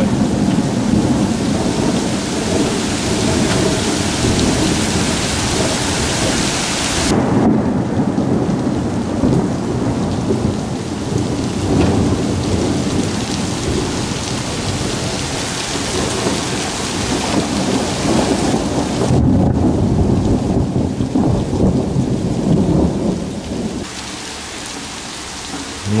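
Heavy downpour: dense, steady rain noise with a deep rumbling low end. The high hiss thins abruptly twice, about a third and about three quarters of the way through, and the rain gets quieter near the end.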